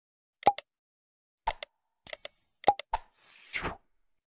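Subscribe-animation sound effects: a pair of quick mouse-click sounds about half a second in and another pair a second later, a short bell ding just after two seconds, two more clicks, then a brief whoosh near the end.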